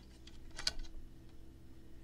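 A few light clicks and taps of a digital caliper's jaws against a metal conduit as it is measured, the loudest a little over half a second in.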